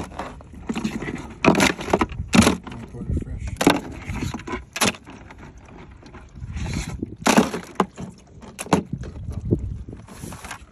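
Live Dungeness crabs moving in a plastic cooler, their shells and legs knocking and clicking against each other and the cooler walls at irregular moments, over a low rumble.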